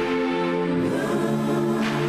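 Choral theme music: a choir holding sustained chords that shift to a new chord just under a second in. A brief swoosh sounds near the end.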